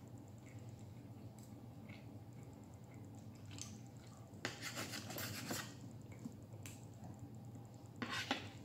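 Knife and fork cutting chicken on a plate: faint scraping and light clicks of the cutlery against the plate. A louder run of scraping comes about halfway through.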